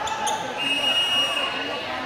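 Referee's whistle blown once and held for over a second, a steady shrill tone that signals the serve, over crowd chatter in a large gym.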